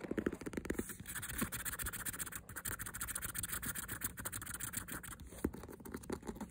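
Fast fingernail scratching on a white faux-leather handbag, dense and rapid. It is heavier and lower in about the first second, then lighter and brighter.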